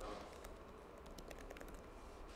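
Typing on a computer keyboard: a faint run of quick, irregular key clicks.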